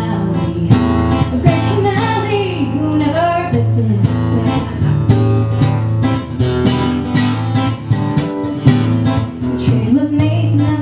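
Acoustic guitar strummed steadily with a woman singing over it for the first few seconds; after that the guitar carries on alone with regular strokes.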